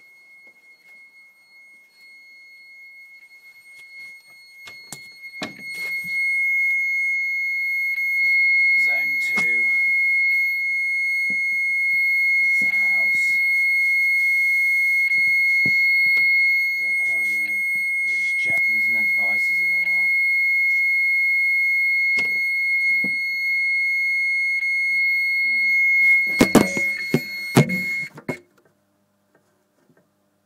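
Electronic fire alarm sounder giving one continuous high-pitched tone, set off by a manual call point. It grows louder over the first few seconds, holds steady, and cuts off suddenly near the end after a few clicks and knocks.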